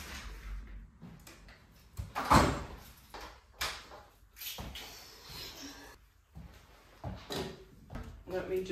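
Apartment front door being handled and shut: a run of separate knocks and clunks, the loudest about two and a half seconds in.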